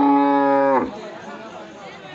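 A cow mooing: one long call held at a steady low pitch, ending a little under a second in, with quieter voices and market noise behind.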